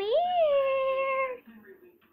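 A girl's voice calling 'here' as one long sing-song note that rises, is held for about a second and a half, and then stops.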